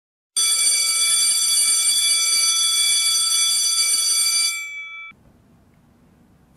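Electric bell ringing loudly for about four seconds, several steady ringing tones over a rattling clangour; the clangour stops and the tones ring on for a moment before cutting off.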